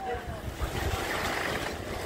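Wind buffeting the microphone over the rush and slosh of harbour swell surging against a concrete pier, a steady noise with a heavy low rumble.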